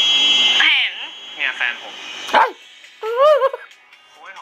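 Dialogue from a TV drama, opening with a steady high tone that ends within the first second, then a short high-pitched wavering vocal squeal about three seconds in.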